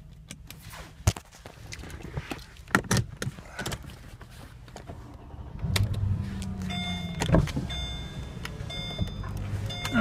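A few sharp clicks of controls being handled, then from about halfway a Mercedes-Benz power seat motor running with a steady hum as the seat is adjusted. An electronic warning chime repeats about once a second.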